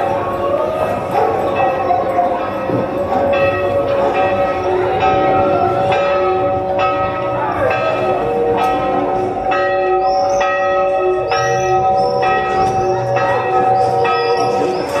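Bells struck again and again, each note ringing on, over long held tones; the strikes come closer together in the second half.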